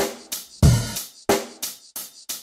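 Drum kit playing an even beat of about three short strokes a second, snare and hi-hat-like hits with a deep bass drum under some of them, counting in a rhythm-reading exercise.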